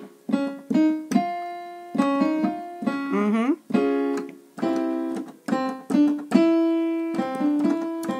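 Piano accompaniment for a staccato-legato vocal exercise: groups of short detached notes, each followed by a longer held note that fades, repeated several times.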